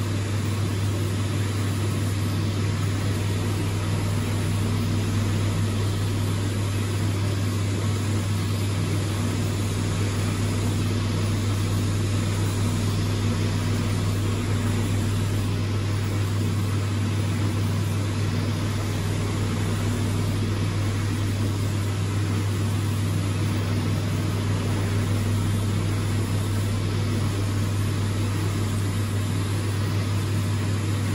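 A steady low machine hum over constant background noise, unchanging throughout, with no starts, stops or clicks.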